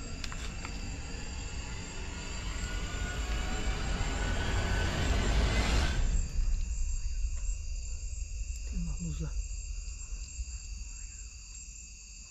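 A steady chorus of night insects, crickets among them, chirring in the brush. A rushing noise swells over about five seconds, then cuts off suddenly about halfway through, leaving the insects alone.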